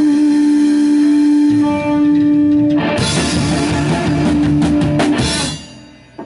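Live band of electric guitar, upright double bass and drum kit ending a song: a loud held note rings for the first few seconds, then a run of drum and cymbal hits closes it out, and the music stops about five and a half seconds in.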